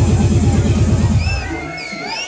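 Electronic club dance music played by a DJ over the club's sound system, with a fast pulsing bassline. About a second and a half in the bass drops out, leaving high gliding tones that rise and fall.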